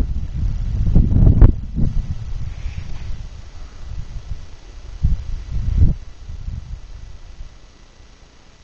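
Wind buffeting the camera microphone: low rumbling gusts, strongest in the first two seconds and again about five seconds in.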